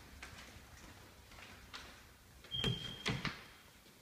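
Faint footsteps on a hardwood floor, then a few louder knocks with a brief high squeak about two and a half seconds in.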